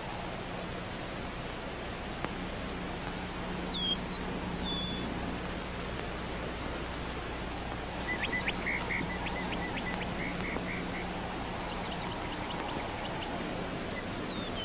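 Steady hiss with a low hum, over which a bird gives a few short falling chirps about four seconds in, then a quick run of repeated notes from about eight to eleven seconds in.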